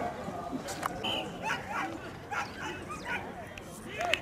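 Greyhounds yelping and whining in a string of short high calls, over distant voices of people.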